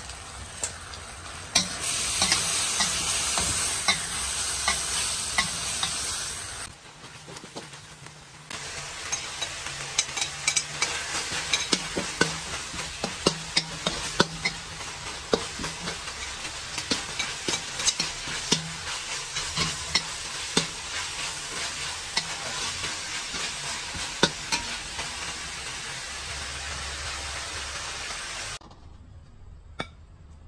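Beef stir-frying in a hot wok, sizzling while a metal spatula scrapes and clacks against the pan. The sizzle is loudest for a few seconds early on, dips briefly, then goes on with frequent spatula knocks until it falls away shortly before the end.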